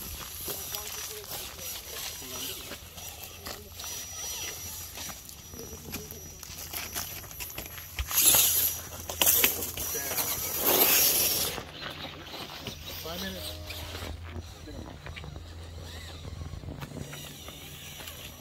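Indistinct talking among people standing around, with two loud rustling bursts about eight and ten seconds in, from the recording phone being handled and brushed by clothing.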